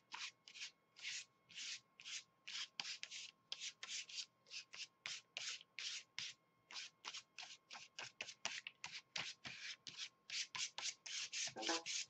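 Foam paint applicator scrubbed back and forth over tissue paper on a paper sheet, spreading white paint: quick, soft, rhythmic swishes, about two or three a second.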